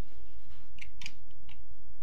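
Three short, sharp clicks or scrapes within about a second, over a steady low hum.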